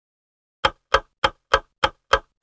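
A clock ticking, loud, even ticks about three a second, starting just over half a second in after dead silence.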